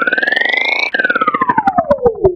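Synthesized logo-sting sound effect for the Pepsi logo animation: one pitched tone glides up while pulsing faster and faster, breaks off about a second in, then glides back down as the pulses slow.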